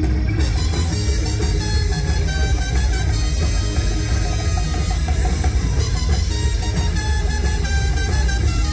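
Live rock band playing an instrumental passage: drum kit keeping a steady beat under electric guitars and bass, with trumpet.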